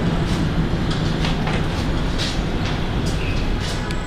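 Steady rumbling room noise of a large indoor training hall, with scattered light knocks and clicks throughout.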